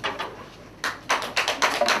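Audience applauding, the clapping starting about a second in.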